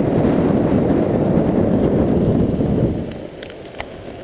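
Wind buffeting the camera's microphone on a moving blokart, a loud low rumble that drops away about three seconds in. A few sharp ticks come near the end.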